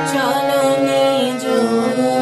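Harmonium playing a slow melody of held reed notes, with a voice singing along whose pitch slides between the notes.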